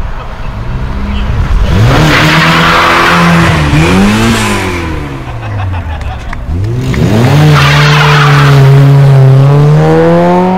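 Mk2 Volkswagen Golf engine revving hard as the car pulls away. The revs climb sharply twice and are held high each time, with a brief drop in between, and a noisy rush sits over the engine note while the revs are up.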